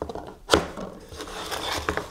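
A 3D-printed card holder handled on a wooden table: a sharp knock about half a second in, then sliding and rubbing as a card is set into its slot, with a small click near the end.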